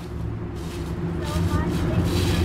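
Engine of a road vehicle on the nearby street, a low steady hum that grows gradually louder as it approaches.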